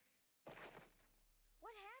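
Cartoon punch impact sound effect: a sudden noisy hit about half a second in, lasting about a second with a low rumble under it, as a character runs into an outstretched fist and is knocked down.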